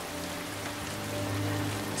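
Heavy rain falling steadily, with soft sustained notes of film score underneath.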